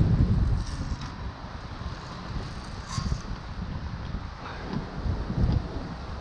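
Wind buffeting the microphone, a low uneven rumble that swells and fades, with a few faint knocks.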